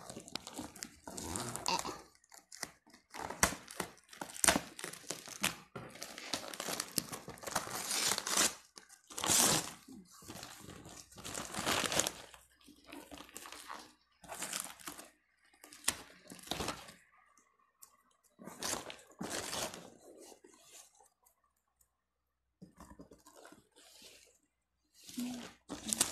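Gift-wrapping paper being torn and crumpled by hand in irregular bursts of rustling, with a quiet gap of about two seconds near the end.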